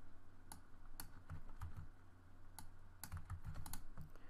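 Faint computer keyboard typing: about nine scattered keystrokes over a low steady hum.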